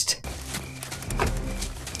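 Movie soundtrack: a soft, low cooing bird call over a low rumble.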